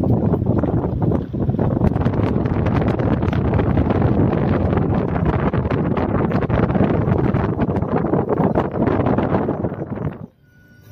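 Wind buffeting the microphone of a phone filming from a moving car, over the car's running and road noise: a loud, steady rushing with constant crackle.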